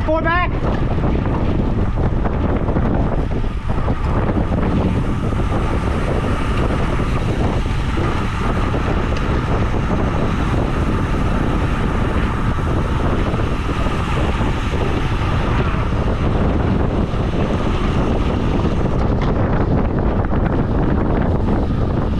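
Steady wind rushing over the camera microphone of a road bike riding in a pack at about 25 mph. A brief warbling high-pitched sound comes in the first half second.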